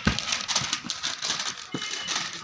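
Newspapers and leaflets being handled by hand: steady paper rustling and shuffling, with a thump near the start and a few softer knocks as papers are laid down on the stacks.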